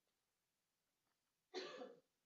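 Near silence, then a single short cough about one and a half seconds in.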